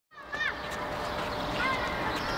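Outdoor background ambience with two short high-pitched calls, one about half a second in and one near the end.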